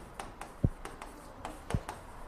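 Chalk on a chalkboard as numbers are written: a quiet series of short taps and scratches, two of them a little louder.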